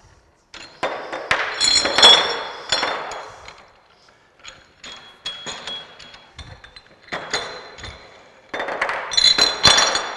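Metal dumbbell weight plates clinking and knocking against the bar and each other as they are handled. This comes in two bursts of clatter with a bright ring, about a second in and again near the end, with a few single clicks between.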